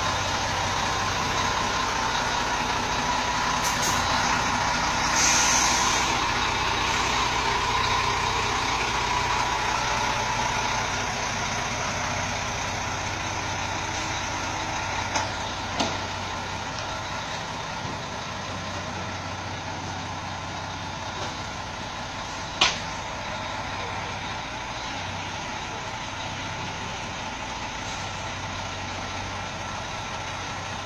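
B-double (Superlink) truck's diesel engine running steadily at low revs, louder for the first ten seconds and then easing off. A short hiss comes about five seconds in, and a few sharp snaps come later, the loudest about two-thirds of the way through.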